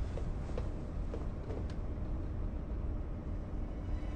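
Steady low rumble of a moving cable car heard from inside its cabin, with four faint steps or knocks about half a second apart in the first two seconds.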